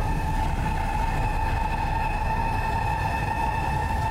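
A sustained, ominous drone from an animated episode's soundtrack: one steady high tone held over a continuous low rumble.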